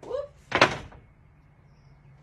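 A brief vocal exclamation, then about half a second in a single loud thump as a hand strikes the plywood shower arch.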